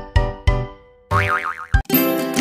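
Cartoon-style intro jingle for a children's channel: two bright struck notes with bass thumps that ring away, then about a second in a wobbling boing sound effect, ending in a short thump.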